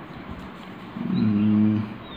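A man's voice holding one drawn-out, level-pitched vowel for under a second, about halfway through, over a faint steady hiss.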